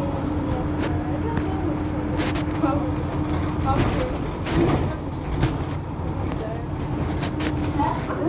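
Mercedes-Benz Citaro C2 hybrid city bus standing at a stop with its diesel engine idling: a steady low hum with a held tone that drops out for a couple of seconds midway. A few sharp clicks sound through it.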